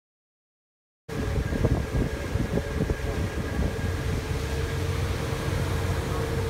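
A steady mechanical drone with a low rumble and a constant hum starts suddenly about a second in, with a few knocks over the next few seconds.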